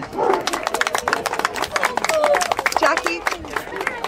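Small crowd applauding: a steady patter of many hand claps, with people talking over it.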